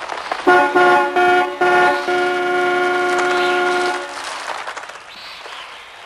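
Car horn honking: four short blasts, then one long blast of about two seconds that stops about four seconds in.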